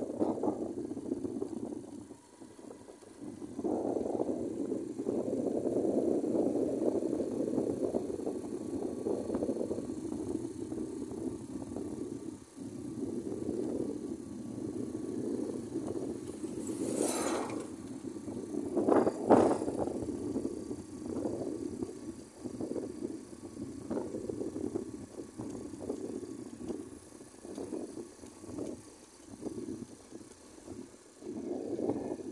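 Wind rushing over the microphone of a moving small motorcycle, with its engine and road noise underneath, swelling and dropping unevenly. About 17 to 19 seconds in there is a sharp louder rush, the loudest moment, as an oncoming truck passes close by.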